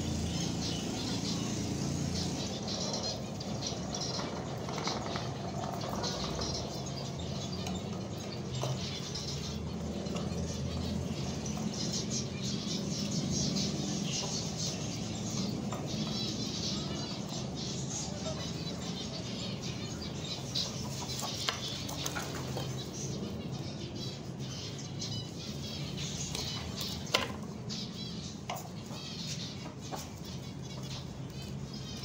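Zebra finches calling with many short, high chirps while bathing in a water dish, with wing flutters and a sharp tap near the end, over a steady low hum.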